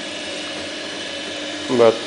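Feed rollers of a homemade planer running, turned by a small electric motor with a reduction gear and roller chains: a steady mechanical running sound with a few held tones.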